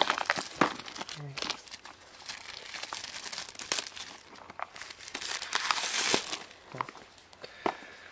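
Plastic shrink-wrap being ripped and peeled off a cardboard puzzle box: irregular crinkling and crackling of the film, busiest about six seconds in.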